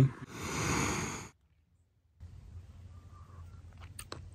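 A breathy exhale close to the microphone, lasting about a second, cut off abruptly into dead silence by an edit, followed by faint steady background noise with a few small clicks.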